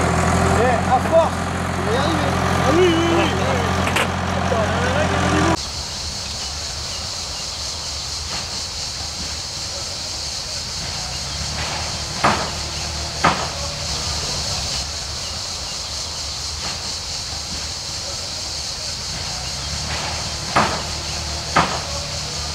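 A truck engine idles steadily under people's voices for the first five seconds or so, then stops abruptly. What follows is a steady hiss broken by a few sharp knocks.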